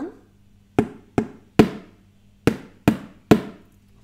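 A wooden spoon striking a plastic food container used as a homemade drum: six sharp taps in the rhythm ti-ti-ta, ti-ti-ta, two quick strikes then one held a beat longer, played twice.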